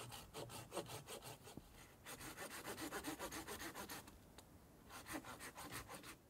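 Hand saw cutting through a dead fallen branch: quick back-and-forth strokes in three bouts, with short pauses between them.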